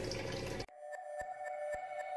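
Tap water running into a steel kitchen sink for under a second, cut off abruptly. Soft background music with sustained tones and faint regular ticks follows.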